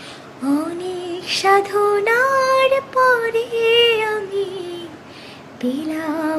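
A woman singing a Bengali song solo without accompaniment, holding long, wavering notes, with a short pause for breath near the end.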